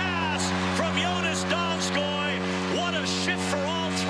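Arena goal horn blowing one long, steady low note to signal a home-team goal, over a crowd cheering and shouting.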